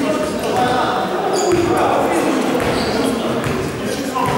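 A basketball being dribbled on the hardwood gym floor at the free-throw line, its bounces echoing in a large hall over steady background chatter from players and spectators.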